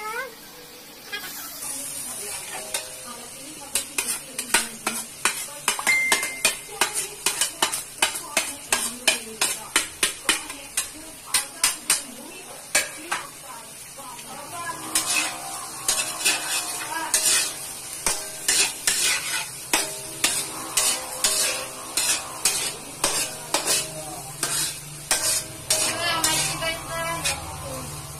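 A metal slotted spatula scraping and clinking against a metal wok in quick repeated strokes as chopped vegetables are stir-fried, with a steady sizzle that sets in about a second in.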